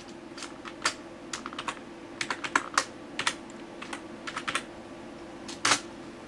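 Keys tapped one by one on a computer keyboard while a password is typed: a run of irregular clicks, with a louder double click near the end. A faint steady hum lies underneath.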